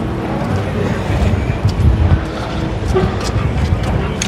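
Town street ambience: a steady low rumble of traffic with faint voices of passers-by, and a few light clicks in the second half.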